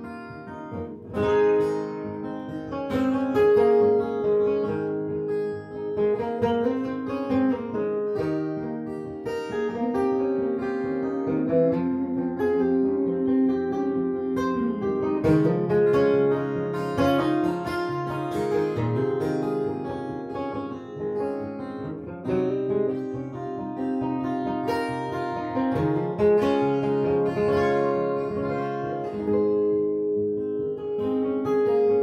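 Two acoustic guitars playing an instrumental passage together, with no singing.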